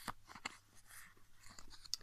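Faint handling of a small stack of Panini paper stickers: soft rustles and light flicks as they are shuffled between the fingers, with a sharper tick near the end.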